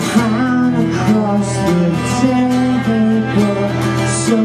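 Acoustic band playing an instrumental passage: strummed acoustic guitars under a bowed cello holding long low notes.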